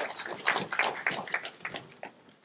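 An audience getting up from auditorium seats: a rapid, irregular scatter of sharp clicks and knocks from tip-up seats and people moving.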